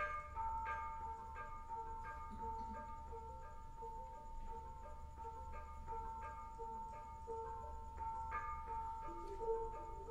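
Javanese gamelan bronze metallophones played softly with mallets. One note rings on throughout while soft struck notes repeat in an even pattern, and lower notes join near the end.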